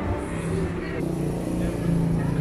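A car engine running close by, a steady low hum that grows slightly louder toward the end, over general street noise.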